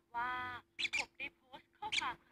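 Young peach-faced lovebird calling: one longer raspy call, then a string of short sharp calls that drop in pitch.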